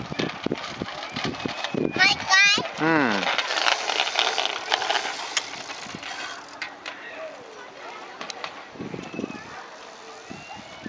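A small child's bicycle rolling and rattling over a plank walkway, with a loud voice call that wavers and falls in pitch about two seconds in and fainter voices later.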